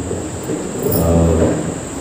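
A man's drawn-out, low filler sound, a long steady "uhh" into a handheld microphone, lasting about a second in the middle of a pause in his talk.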